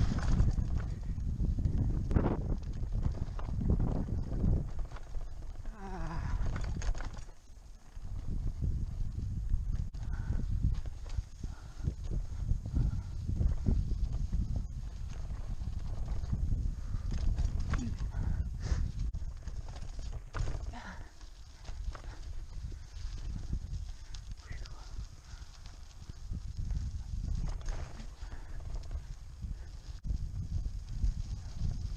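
A bike rolling over a rough, rocky dirt road: a steady rumble and buffeting with irregular clattering knocks from the tires and frame.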